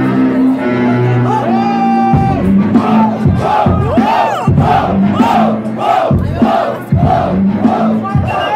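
Hip-hop beat from the DJ, with sustained held notes at first and a kick drum coming in about two seconds in, while the crowd chants and shouts in time with it.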